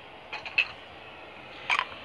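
Steady hiss of static from a ghost radio (spirit box) app on a tablet, broken by a few short sharp clicks and knocks, the loudest just after half a second in and another near the end.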